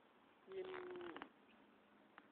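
A person's voice drawing out one word on a single level pitch for under a second, starting about half a second in.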